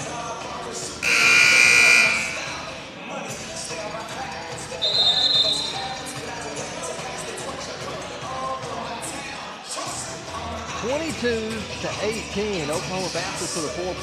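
Gym scoreboard horn sounding for about a second, about a second in, as the timeout clock passes fifteen seconds: the warning that the timeout is ending. A short high whistle follows a few seconds later.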